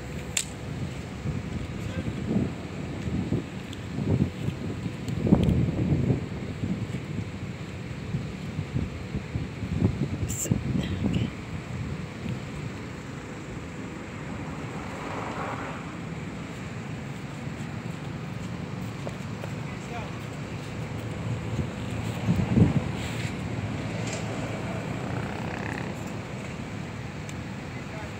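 Wind buffeting the microphone in irregular gusts, with faint, indistinct voices in the background.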